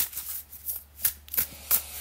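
A deck of tarot cards being shuffled by hand, overhand: a quick series of short rustling slaps of cards against cards, about six in two seconds.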